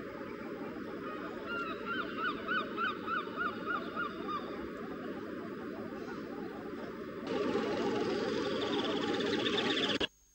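A gull calling: a run of about nine short repeated calls, about three a second, lasting about three seconds. Behind it is a steady background rush that gets louder about seven seconds in.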